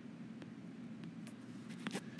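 Quiet room tone with a few faint clicks, the sharpest near the end.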